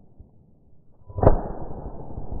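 A single shotgun shot about a second in, sudden and loud, with a short tail as it dies away, amid rustling of brush and gun handling.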